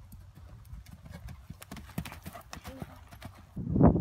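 Hoofbeats of a Thoroughbred horse cantering on a dirt arena, a quick run of soft strikes. Near the end a much louder, low rush of sound rises over them.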